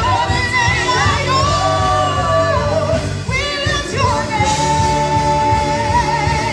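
A church praise team singing a worship song over band accompaniment with a steady beat; one voice holds a long, steady note through the second half.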